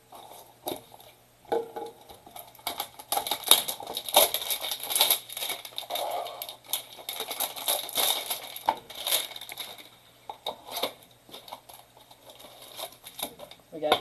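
A cardboard trading-card hanger box being torn open and its wrapping crinkled by hand: a run of tearing and crackling, densest from about three to nine seconds in, thinning out towards the end.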